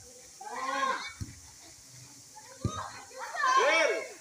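A volleyball rally: the ball is struck twice with sharp smacks, about a second in and again past halfway. Players and onlookers shout and call out around the hits, with the loudest, drawn-out shout near the end.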